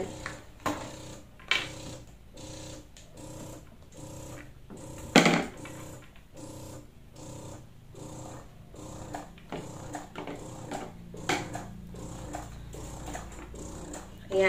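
Imani i1+ electric breast pump running in massage mode: its motor hums in fast, evenly repeating suction pulses. A few sharp clicks come from the flange and parts being handled, the loudest about five seconds in.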